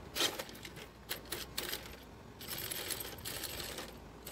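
RC car moving off over gritty asphalt: crackling and clicking of its tyres and drivetrain, in a burst just after the start and a longer spell in the second half.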